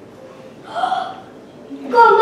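Quiet room tone broken once, about three-quarters of a second in, by a single short vocal exclamation lasting about half a second.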